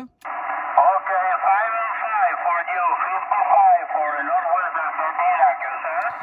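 A distant station's voice received on 20-metre single-sideband through a Yaesu FT-891 transceiver: narrow, tinny speech over steady band hiss.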